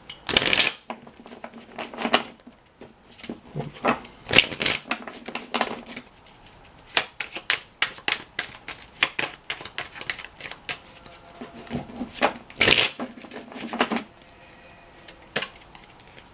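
A tarot deck being shuffled by hand: a run of short rustling, clicking bursts of cards, the loudest near the start and again about three-quarters of the way through, easing off near the end.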